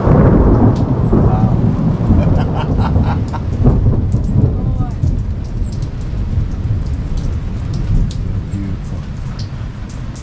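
Rain falling around a canvas awning with many light drop ticks, over a loud, heavy low rumble that is strongest in the first second and eases off later.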